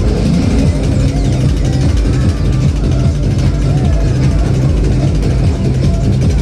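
Round Up fairground ride's machinery running as the cage turns, a low steady drone with a regular pulse, among fairground noise and voices.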